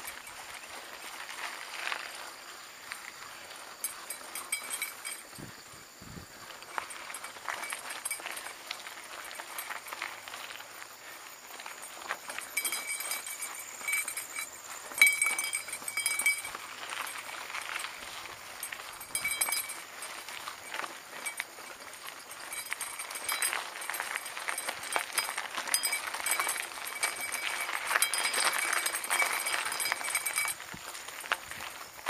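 Mountain bike rattling and clinking over a rough dirt and gravel trail, with many small irregular knocks from the bike and tyres on loose stones, and one sharper, louder knock about halfway through. A high, pulsing animal call comes and goes in the second half.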